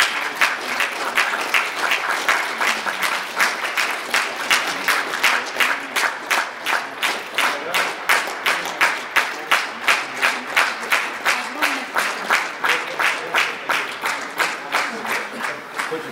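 Audience applauding in unison, clapping together in a steady rhythm of about three claps a second.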